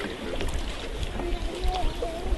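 Faint voices calling over a steady low rumble.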